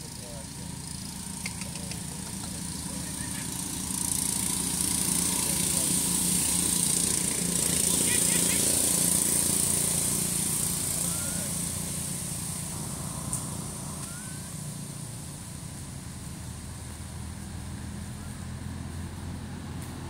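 Outdoor ambience with a steady low hum like a distant engine. Over it, a high hissing buzz swells from about four seconds in, is loudest near the middle and fades, with a few faint short chirps.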